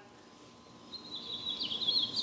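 A small bird chirping: after about a second of quiet, a quick run of short, high notes that jump up and down in pitch.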